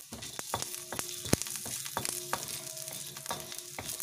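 Small spices, seeds and dal, sizzling in a little oil in a pan as they roast, with a steady hiss and many sharp crackles and ticks. One crack is louder, a little over a second in. A spatula scrapes the pan as they are stirred.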